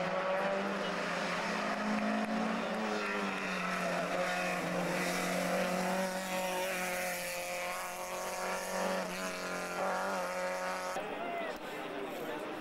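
Competition car's engine revving hard on a hill-climb stage, its note rising and dropping as it changes gear.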